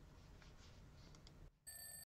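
Near silence with faint room tone, then near the end a brief high electronic tone, like a ringtone or beep, that cuts off suddenly into dead silence.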